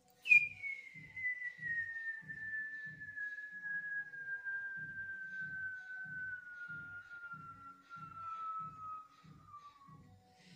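A man whistling one long note through pursed lips that slides slowly downward in pitch for nearly ten seconds, a sound effect for a huge, soaring leap. A faint low pulse runs underneath at about two a second.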